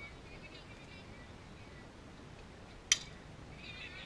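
A softball bat striking a pitched ball: one sharp crack about three seconds in. Spectators' high-pitched shouts rise right after it.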